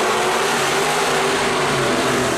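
A pack of dirt-track race cars running hard together, their engines a loud, dense, overlapping drone.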